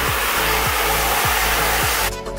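Garden hose spray nozzle on its shower setting spraying water into a plastic storage tub: a steady hiss of water filling the tub. Background music with a steady beat plays over it.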